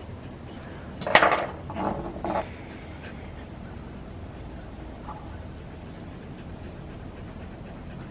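Small grooming scissors snipping faint, scattered cuts as the hair around a puppy's eyes is trimmed, with a short, louder sound about a second in.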